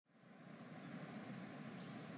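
Faint, steady background hiss fading in from silence, with a thin steady tone running through it.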